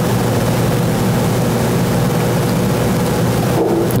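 A loud, steady droning hum with a low rumble underneath, unchanging throughout. A brief voiced sound comes just before the end.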